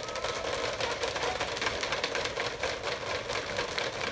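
Crowd applauding, a steady dense patter of many hands clapping.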